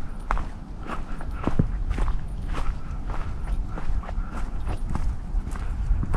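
Footsteps of a hiker walking, about two steps a second, each step a short crunch, over a steady low rumble on the microphone.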